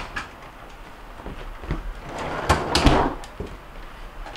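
Refrigerator bottom-freezer drawer sliding shut on its rails, a rush of sliding noise ending in a couple of knocks about two and a half to three seconds in. The drawer is being closed to check that it slides freely with its door refitted.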